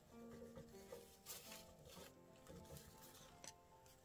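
Faint background music, with a few soft rustles as hands smooth a thin paper napkin onto a galvanized metal sheet.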